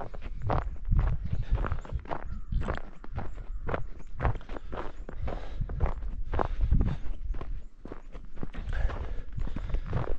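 Footsteps of a person walking on packed snow and ice, about two steps a second.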